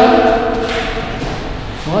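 A man's voice drawn out in one long, held exclamation that rises at first and fades about a second in, then a short word near the end.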